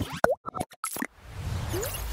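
Animated TV-channel logo sting: a quick run of short sound-effect pops and a bloop that slides up in pitch, then a whoosh with a low rumble that swells toward the end.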